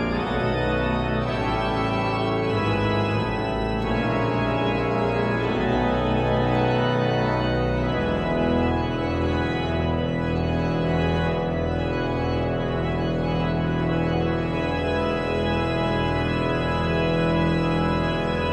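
Pipe organ playing full chords over low pedal notes. The chords move for the first several seconds, then settle into long held chords.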